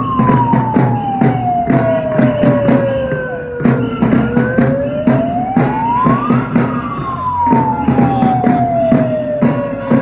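Drums beaten in a steady rhythm, about three strokes a second, with a siren wailing slowly up and down over them, one full rise and fall about every seven seconds.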